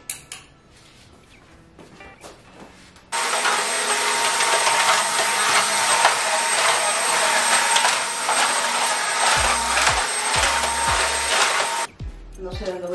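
Upright vacuum cleaner switched on about three seconds in, running with a steady high whine over a loud rushing hiss, with a few low bumps near the end, then switched off abruptly just before the end.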